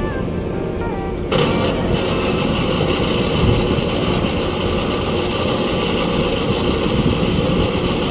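Background music that stops abruptly just over a second in, followed by a steady, loud engine rumble from the docked ferry and the vehicles on its unloading ramp.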